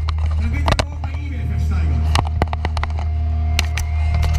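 Steady low hum from the stage amplification, with a few sharp knocks and faint voices, on stage between songs at a large open-air rock concert.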